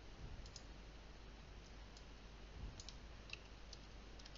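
Faint, scattered clicks of a computer keyboard and mouse, about six in all, over a low steady hum.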